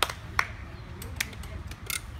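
A few sharp, separate plastic clicks, spaced irregularly, from a Wet Head game helmet being handled and turned.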